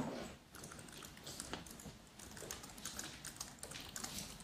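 Irregular light clicks of a laptop's keys and mouse being worked, with a dull thump right at the start.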